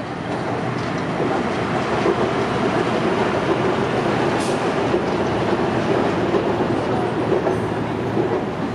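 BTS Skytrain train running past on the elevated viaduct overhead: a steady rumble with a hum, growing louder about a second in and then holding.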